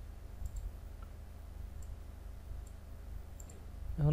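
Computer mouse clicking about six times, some clicks in quick pairs, over a faint steady low hum.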